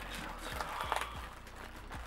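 Plastic bag crinkling and rustling as a wrapped costume is gripped and pulled out of a cardboard box.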